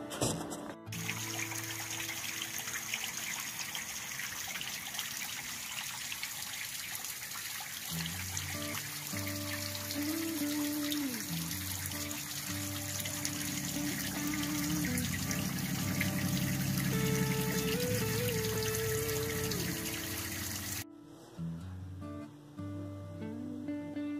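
Water trickling steadily with background music: sustained low notes and a slow melody join about eight seconds in. Both cut off suddenly near the end.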